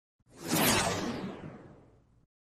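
A single whoosh sound effect for an intro logo, swelling in quickly and then fading away over about a second and a half, its hiss sinking lower in pitch as it dies out.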